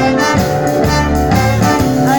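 Live blues band with a horn section of saxophones and trumpets playing a sustained riff.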